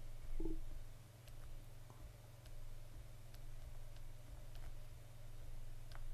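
Quiet room tone with a steady low electrical hum and a few faint, scattered clicks, with a brief faint pitched sound about half a second in.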